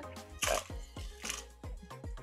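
Two short, quiet, breathy laughs over faint background music with a steady low note.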